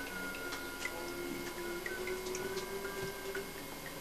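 Quiet room with faint, irregular light ticks and clicks, and a faint steady tone that wavers slightly in pitch.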